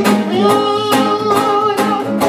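Acoustic reggae played live: two guitars strumming a steady rhythm under a sung vocal line, with a note held long through most of the passage.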